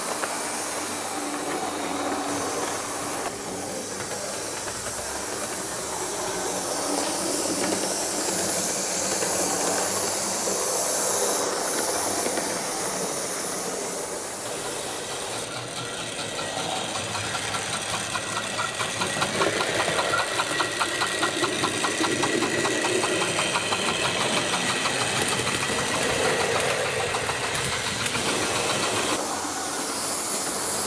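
OO gauge model trains running on the layout's track: a steady motor whir and rolling wheel noise. From about two-thirds through, a fast, even run of clicks comes in as wheels pass over rail joints and pointwork.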